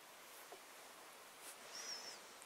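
Near silence: a faint steady hiss, with a short, high, wavering chirp near the end.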